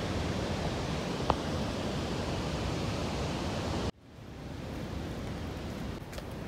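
Steady rushing roar of the large Chitrakote waterfall in monsoon flood. About four seconds in the sound cuts off abruptly, then a quieter steady rush fades back in.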